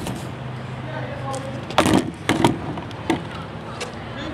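Several sharp knocks and clacks, the loudest about two seconds in, over a steady low hum and faint voices.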